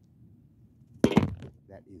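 A man's sudden loud shout about a second in, with a few quieter vocal sounds after it: a golfer's cry of delight as his chip shot drops into the hole.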